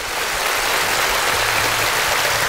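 Studio audience and contestants applauding, dense steady clapping that swells in over the first half second.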